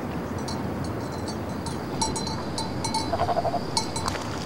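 Small animal bell clinking irregularly, the clinks growing busier and more ringing about halfway through, over a steady outdoor hiss.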